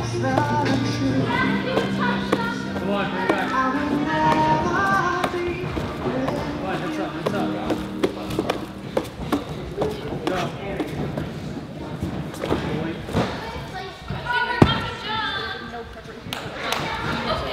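A gymnast's hands thumping and slapping on a pommel horse during a routine, irregular knocks throughout. There is one loud thud about 14.5 seconds in as he lands the dismount on the mat. Background music plays under the first few seconds, and voices come in near the end.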